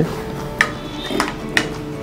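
A spatula knocks lightly against a nonstick frying pan three times while stirring thick vadakari, over faint background music.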